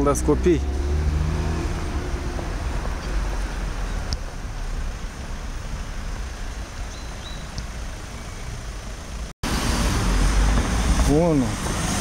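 City street traffic noise: a steady low rumble of cars, with a brief dropout about nine seconds in.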